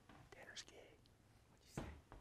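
Near silence with faint whispered speech, and one sharp knock near the end.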